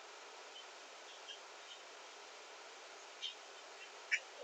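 Faint steady whir of small desk fans, with a few light taps of utensils on tableware, about a second in and again near the end.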